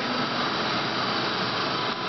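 CNC T100 benchtop turning lathe running in its automatic cycle: the spindle whirs steadily while the tool takes a 0.5 mm deep turning cut, a heavier cut set to throw thicker chips.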